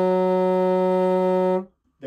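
Contrabassoon holding one steady, sustained F# in its tenor range, ending about one and a half seconds in. With this fingering the F# sits low, so the note is pushed up to pitch with the embouchure.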